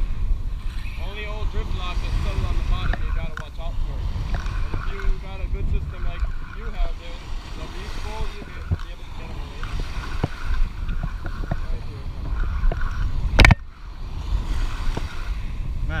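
Wind buffeting the microphone over small waves washing onto the shore, with one sharp knock about three-quarters of the way through.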